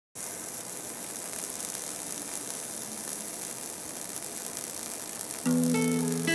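Steady hiss of an arc welding, running evenly. About five and a half seconds in, a plucked acoustic guitar tune starts.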